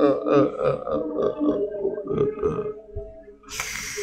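A man's voice at close range on a microphone, making short, broken, choked vocal sounds, then a noisy breath into the microphone lasting about a second near the end.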